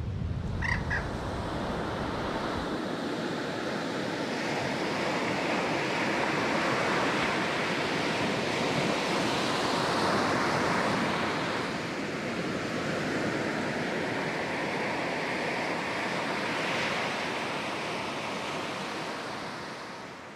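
Surf breaking on a sandy beach: a steady wash of waves that swells and eases, fading out at the end. A couple of short high chirps sound about a second in.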